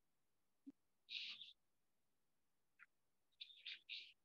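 Faint, short, high-pitched chirps over near silence, like a bird calling: one about a second in and a quick cluster near the end.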